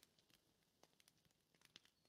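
Near silence, with a few faint ticks near the middle and towards the end.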